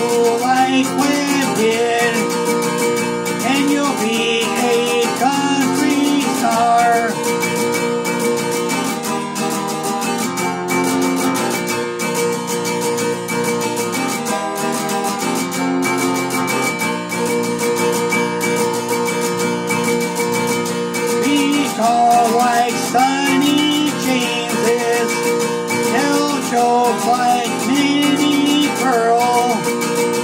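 Takamine steel-string acoustic guitar strummed steadily in a country song, with sustained chords and a melody line bending over them.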